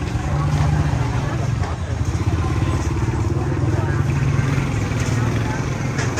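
Motorbike engine running close by with a steady low rumble, over the chatter of a busy crowd.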